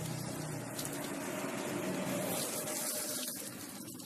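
Granules of TSP (triple superphosphate) fertilizer pouring from a plastic bag onto the soil, a steady hiss.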